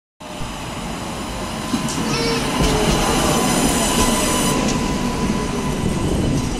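A Budapest Tatra T5C5 tram pulling into a stop and passing close by, its wheels rumbling on the rails and growing louder over the first few seconds. A brief wheel squeal comes about two seconds in, over a steady whine.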